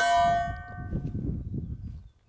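A single 9mm pistol shot from a Glock 17 Gen 5 right at the start, followed by a bell-like clang of a steel target, several ringing tones dying away within about a second while one thin tone lingers almost to the end. A low rumble of the shot's echo sits underneath.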